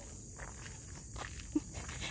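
Faint, irregular footsteps on a gravel road.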